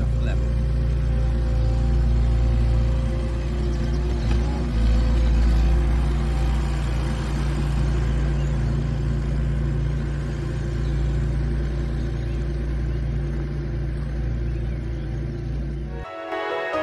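Compact articulated loader's engine running steadily as the machine drives over bare soil: a low, even drone, a little louder about five seconds in.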